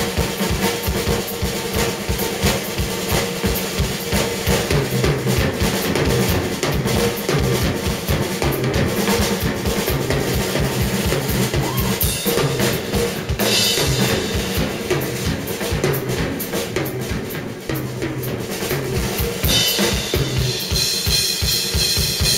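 Live rock drum kit played hard and fast, in a rapid run of kick drum, snare and tom strikes with cymbals, as in a drum solo.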